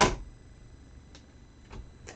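A single sharp plastic click as stamping tools are handled on the craft mat, then a couple of faint ticks.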